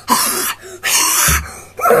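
Two short, breathy vocal bursts from a boy, the second about a second in, with speech starting near the end.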